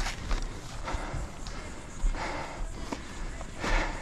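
A few footsteps scuffing on sandy dirt and grass, irregularly spaced, with some low bumps on the microphone.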